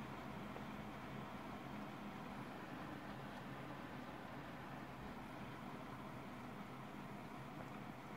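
Faint, steady whir of a desktop PC's cooling fans with a low hum, the CPU working under a Cinebench render load.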